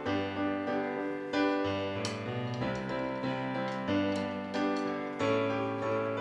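School concert band playing a piece of music in sustained chords that change every second or so.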